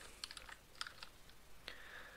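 Computer keyboard typing: a quick, uneven run of faint key clicks, with a last keystroke near the end.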